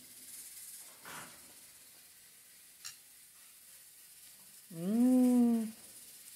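A person quietly eating a spoonful of chocolate cake, with a faint spoon click, then a hummed 'mmm' of enjoyment lasting about a second near the end.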